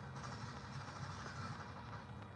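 Steady outdoor background noise: a low rumble with a faint even hiss above it.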